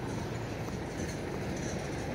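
Steady low rumbling outdoor background noise with no single clear source.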